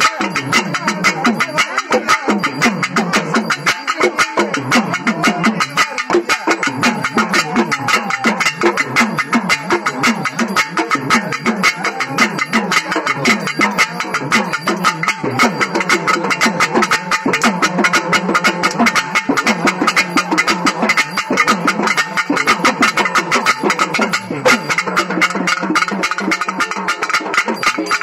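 Pambai, the Tamil folk pair of stick-beaten drums, played in fast, unbroken strokes for ritual worship, with a wavering melodic line sounding over the drumming.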